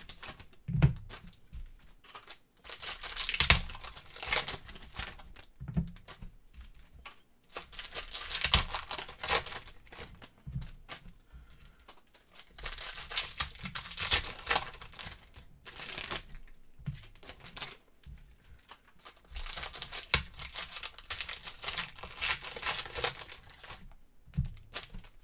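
Foil trading-card pack wrappers crinkling and tearing open as packs are handled, in bursts every few seconds with a few light knocks between them.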